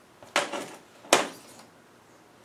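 Two sharp metallic clinks about a second apart, the second louder, as the steel rocker arms, springs and spacers are taken off a Land Rover 2.25 petrol engine's rocker shaft.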